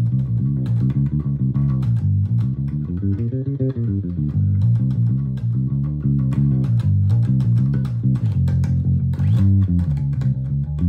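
Electric bass guitar played fingerstyle: a fast, continuous riff of low notes built on the G blues scale, with a run that climbs and comes back down about three to four seconds in.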